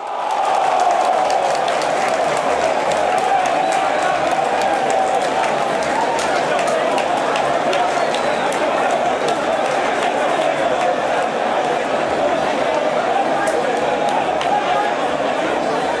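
Football stadium crowd cheering and chanting after a goal, loud and steady from its sudden start, with a low regular pulse underneath.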